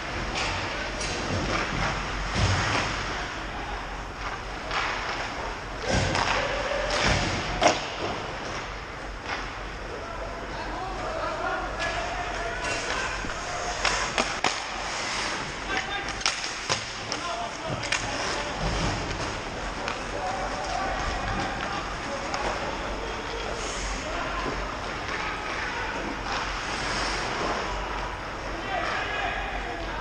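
Ice hockey play in an echoing rink: sharp knocks and thuds of sticks and puck against the boards and ice, the loudest about a third of the way in, over a steady din with players shouting indistinctly.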